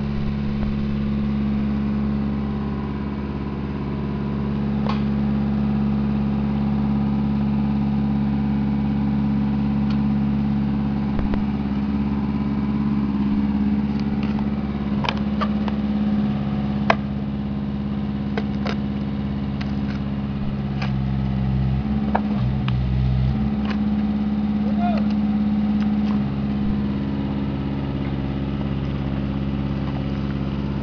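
Engine of a horizontal directional drill rig running steadily while the drill rod is pushed through the ground, its note shifting briefly about two-thirds of the way through. A shovel scrapes and knocks in the soil in short, scattered strokes.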